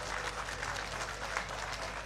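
Audience applauding, a quick patter of many separate claps.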